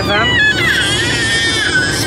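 A baby's long, high-pitched vocalising, 'singing', one drawn-out squeal that slides slowly down in pitch, over the steady road rumble inside a moving car.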